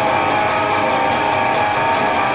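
Distorted electric guitar playing a metal riff, a continuous dense wall of notes with no breaks.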